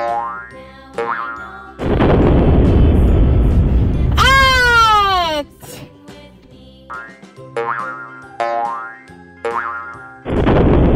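Cartoon sound effects over children's music: short springy boings rising in pitch, then from about two seconds in a loud rumbling rush of noise lasting about three and a half seconds, with a descending whistle through its middle. More boings follow in the last few seconds.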